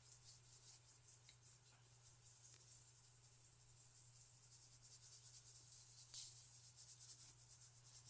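Faint, fine scattered ticking of ballast grit being shaken from a small cup and falling onto a glued board, over a steady low hum.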